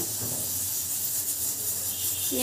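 Steady hiss of hot oil sizzling as a batch of maida papdi fry in a kadhai on a low flame.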